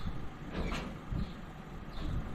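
Outdoor ambience: a low rumble of wind on the microphone and a short high chirp repeating about every 0.7 seconds. A brief whoosh comes about half a second in.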